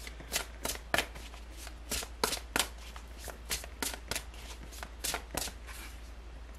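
A tarot deck being shuffled by hand: a run of short, sharp card snaps at an uneven pace, about two or three a second.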